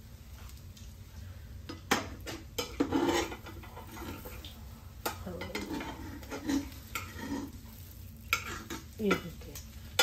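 A cooking utensil clinking and scraping against a frying pan and a small cast-iron skillet, with sharp knocks about two, five and eight to nine seconds in. Under it is a faint sizzle of French toast frying in oil.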